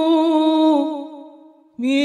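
Unaccompanied devotional singing of a sholawat: a long held note with a slight waver fades away about a second in and goes briefly near silent. The next line starts near the end on a rising note.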